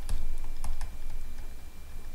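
Pen stylus tapping and scratching on a drawing tablet while handwriting, a handful of light, irregular clicks.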